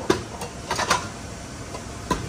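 Stainless steel mixing bowl being set onto a stand mixer and seated in its mount: a sharp metal knock just after the start, then a few lighter clicks and clinks about a second in.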